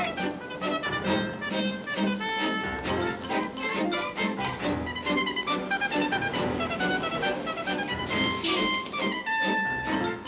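Orchestral film score led by brass, playing a lively run of short, quickly changing notes.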